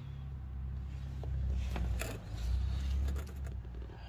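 Low rumbling handling noise from a hand-held phone being moved under a car, swelling and fading, with a few faint clicks and scrapes.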